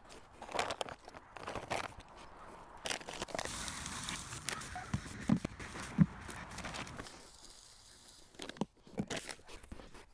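Footsteps crunching on wood-chip mulch. Then dry play sand poured through a plastic funnel into a patio-heater base, a steady hiss for about four seconds, followed by a few light knocks near the end as the funnel is handled.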